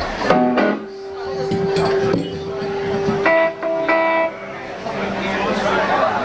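Electric guitar played through a small amp: a few long held notes, the first ringing steadily for about two seconds, then two shorter notes, over people talking.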